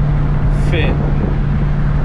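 Chevrolet Caprice under way, heard from inside the cabin: a steady low drone of engine and road noise with a constant hum.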